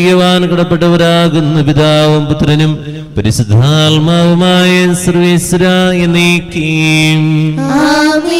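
A man's voice chanting a Malayalam liturgical prayer of the Syro-Malabar Qurbana into a microphone, held on long, nearly level notes. There is a short break about three seconds in, and the pitch steps up just before the end.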